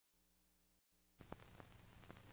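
Near silence. About a second in, a faint soundtrack hiss fades up, with a few soft clicks.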